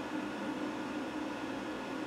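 Steady hiss and hum from an electric guitar rig left idle between phrases, with a faint note still ringing underneath.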